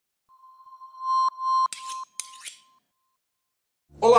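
Short intro sound logo: a steady beep-like tone with several sharp clicks and bright ringing clinks over it, all ending about two and a half seconds in.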